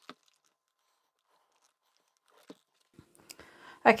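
Quiet handling of folded cotton fabric and an iron on a work table: a light click at the start, a soft knock about two and a half seconds in, and faint rustling of the fabric near the end.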